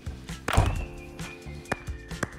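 Music with a high held note over low sustained tones, punctuated by irregular sharp percussive hits; the loudest hit falls just after half a second in.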